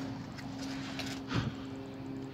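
Cardboard box lid being lifted and handled, with a faint click about a second in, over a steady low hum.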